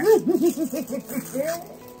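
A woman laughing: a quick string of short pitched "ha" sounds in the first second, with one more just after and then trailing off.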